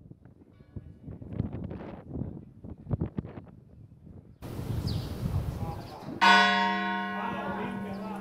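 A large church bell strikes once about six seconds in and hums on with a long ring. Before that, low background sound of the city.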